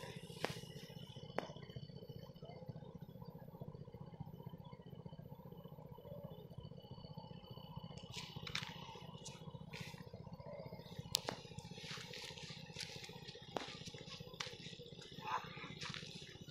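Outdoor background noise: a steady low rumble with scattered sharp clicks and faint distant voices.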